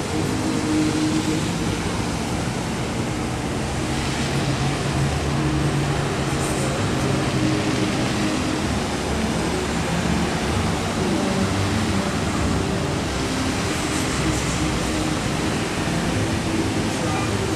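Steady rushing spray of a large fountain's rows of water jets falling into the lake, over a low hum of traffic.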